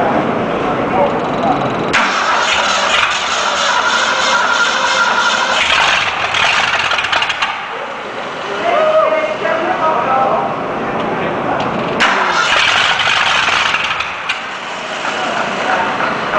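Freshly rebuilt Ford 302 V8 on an engine stand being cranked over by its starter in two spells, one of about five seconds starting two seconds in and a shorter one of about two seconds later on, in a start attempt.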